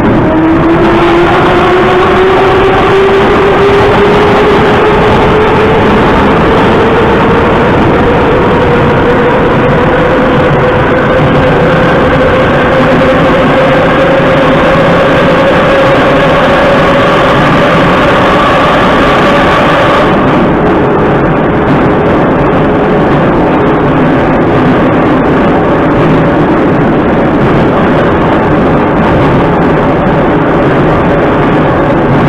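Metro train pulling away and speeding up through a tunnel: the traction motors whine in a steadily rising pitch for about twenty seconds over a loud, steady rumble of wheels on rails. About twenty seconds in the whine changes and the upper hiss drops away, and the train runs on with a lower, steadier rumble.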